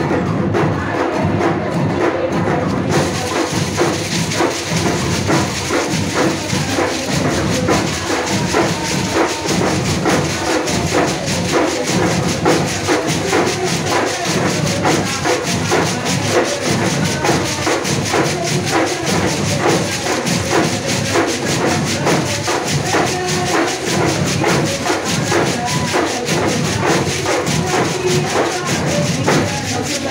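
An Afro-Brazilian percussion ensemble playing a steady, driving rhythm on hand drums and bead-netted shakers (xequerês). The sound grows fuller and brighter about three seconds in.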